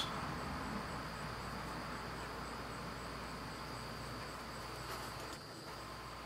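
Quiet steady background hiss with a thin, continuous high-pitched tone; no handling sounds stand out.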